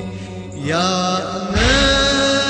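Shia devotional chant music (latmiya): a voice slides upward into a long held note over a sustained backing drone, with a deep beat near the end.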